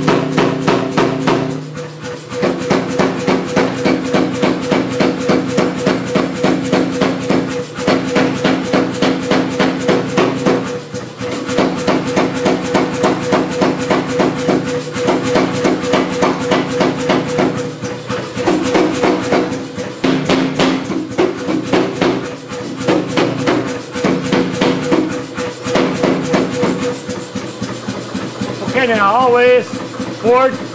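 Say-Mak self-contained air power hammer striking a hot steel bar in a rapid, even run of blows, with short pauses every few seconds, over the steady hum of the running machine.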